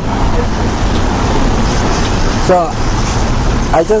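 Steady road traffic noise with a low rumble, with a few short snatches of a voice over it.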